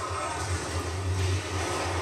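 A steady low rumble under a faint noisy haze, with no clear events, from the anime episode's soundtrack playing in the background.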